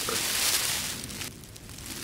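Thin mylar emergency blanket crinkling as it is gathered and held around the body, the rustle dying away a little past halfway.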